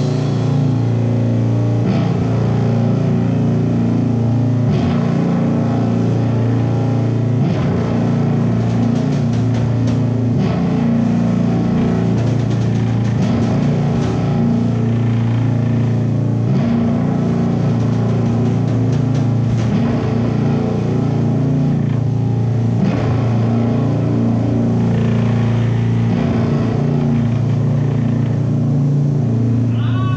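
Live amplified electric guitar and electric bass playing loud and steady, a held, droning heavy-rock sound, with only scattered sharp hits over it.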